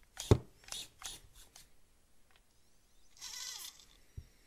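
A few sharp clicks in the first second as the Traxxas TRX-4M micro crawler is handled and switched on, then about three seconds in a brief pitched sound whose pitch bends downward as it powers up.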